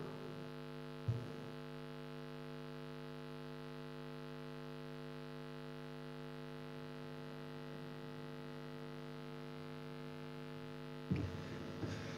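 Steady electrical mains hum in the chamber's audio feed, with a short knock about a second in. Near the end the hum breaks off into slightly louder room noise.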